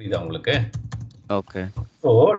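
Typing on a computer keyboard, short key clicks as numbers are entered into a spreadsheet, with a voice talking over it in short stretches.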